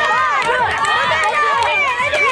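A crowd of children and adults shouting and cheering on a player, many voices overlapping.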